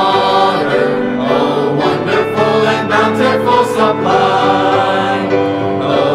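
Choir singing a gospel hymn.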